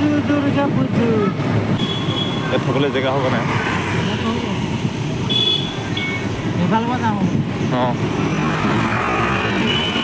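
Steady running and road noise of a moving vehicle, with people's voices talking and calling out over it.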